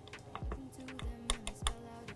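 Thin wooden stick clicking and scraping against a tiny glass bowl while stirring a thick sauce, a run of sharp light clicks with the loudest about one and a half seconds in.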